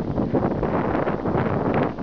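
Wind blowing across the camera microphone: a steady, loud rush of noise, heaviest in the low end.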